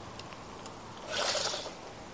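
A short, soft rustle about a second in, as a measuring tape is laid and slid along the butt of a carbon fishing rod.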